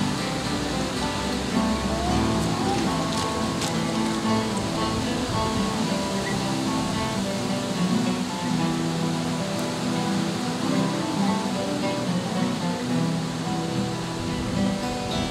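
An ensemble of about a dozen acoustic guitars playing a folk tune together.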